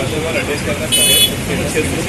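Street traffic noise with a short, high-pitched vehicle horn toot about a second in.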